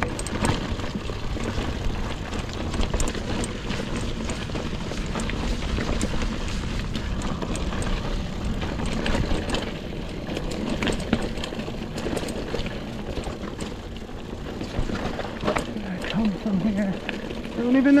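Mongoose Ledge X1 full-suspension mountain bike riding over a rocky dirt trail: tyres rolling over stones, with frequent short rattles and knocks from the bike and wind noise on the microphone. Near the end a brief vocal sound from the rider.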